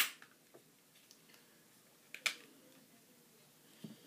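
Quiet room with a few sharp plastic clicks: a loud one right at the start as the hand lets go of the rain gauge collector on the desk, another about two seconds in, and a faint one near the end.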